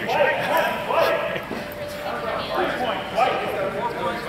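Indistinct voices of people talking.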